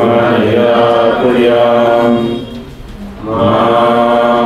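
Mantra chanting: a voice holds long, steady notes, pauses for a breath about two and a half seconds in, and starts a new phrase near the end.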